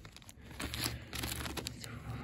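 Clear plastic bags holding model-kit sprues crinkling as they are handled, with many small irregular crackles.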